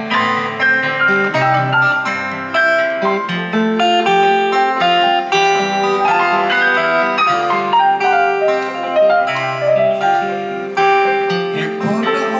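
Acoustic guitar and an electric keyboard with a piano sound playing together live. The guitar's steady chords run under moving keyboard note lines.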